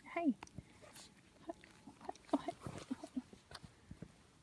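Shetland sheepdog puppies vocalising as they play: a falling whine right at the start, then several short calls about two to three seconds in, among small scuffling clicks.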